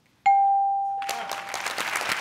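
Game-show answer-reveal ding: a single electronic chime strikes about a quarter second in and rings out, fading over about a second. The chime signals that the answer scored points on the survey board. Studio audience applause follows from about a second in.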